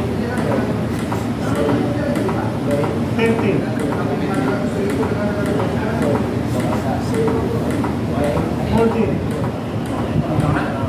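Chest compressions on a CPR training manikin: a steady rhythm of faint clicks as the chest is pushed down again and again. People are talking over it throughout.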